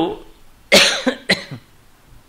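A man coughing twice, a longer cough about 0.7 s in and a shorter one half a second later, close to the microphone.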